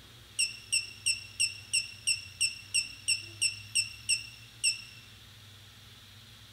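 About a dozen short, high electronic beeps, about three a second, stopping about five seconds in, sounding while the gimbal controller's accelerometer calibration runs.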